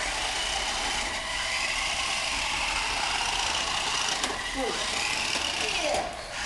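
Small electric motors and gears of toy radio-controlled cars running steadily, a continuous high whine.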